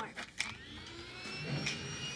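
Show sound effect for the secret passage opening: a high electric whine that rises in pitch and then holds steady, with a low rumble joining about halfway through.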